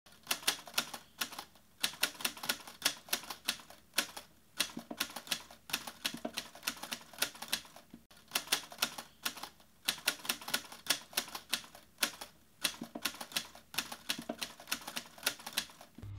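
Pages of a paperback book being flicked past the thumb, each page giving off a sharp click, in quick, irregular runs of several clicks a second.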